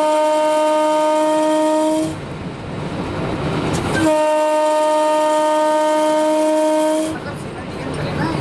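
Indian Railways electric locomotive horn sounding two long steady blasts, heard from the cab. The first ends about two seconds in and the second starts about four seconds in and lasts about three seconds. The running noise of the train on the track fills the gaps.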